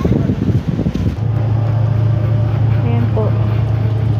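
Unsteady low noise, then about a second in a steady low engine hum sets in and holds, with faint voices in the background.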